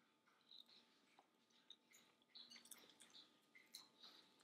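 Near silence, with faint small clicks of someone chewing a mouthful of food.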